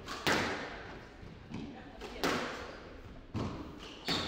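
A squash ball being struck by rackets and hitting the court walls during a rally. Four sharp cracks, each echoing off the court walls, come about a second or two apart; the first and third are the loudest.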